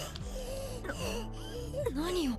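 Anime soundtrack: a character's voice wavering up and down in pitch in short breaths and cries, over low sustained background music.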